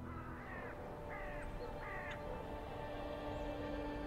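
A bird cawing three times in quick succession, about two-thirds of a second apart, over faint sustained background music.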